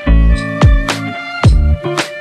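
Background music with a steady drum beat: deep kick drum hits and sharp strikes over sustained instrumental tones.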